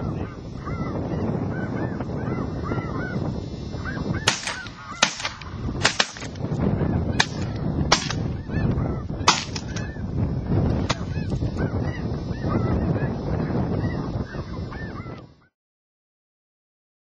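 A flock of snow geese calling continuously, with a volley of about ten shotgun shots fired into them between about four and eleven seconds in. The sound cuts off sharply near the end.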